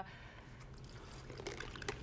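Orange punch poured from a glass pitcher into a glass: a soft, steady trickle, with a few light clicks near the end.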